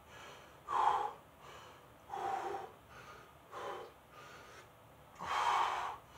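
A man breathing hard from the exertion of push-ups: four loud breaths at roughly one-and-a-half-second intervals, with softer breaths between them.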